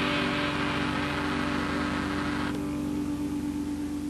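Electric guitar left ringing through its amplifier: a held, steady drone that slowly fades between song sections, with the hiss above it dropping away about two and a half seconds in.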